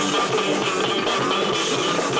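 Four-string electric bass played with chords strummed across the strings by a sweeping hand.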